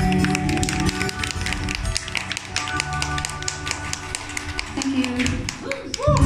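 Keyboard and bass holding a last chord that slowly fades, under the quick, uneven claps of a small audience applauding the end of the song.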